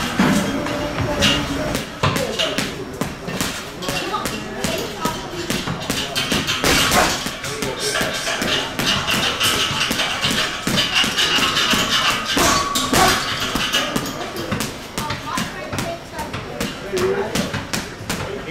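Boxing gloves striking a hanging heavy bag in fast combinations, a dense run of thuds and slaps several to the second, over music playing in the background.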